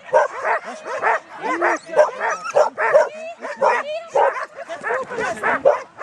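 A dog barking continuously in short, rapid barks, about three a second, while running an agility course.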